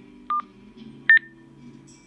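Motorola MTP3250 TETRA handheld radio sounding two short electronic beeps as it powers up, the second higher in pitch and louder than the first.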